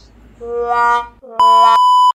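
Electronic transition sound effect: a held tone that grows louder for under a second, then a higher, louder steady beep that cuts off suddenly.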